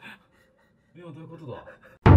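A man's faint, drawn-out vocal exclamation, falling in pitch, starting about a second in after a brief hush.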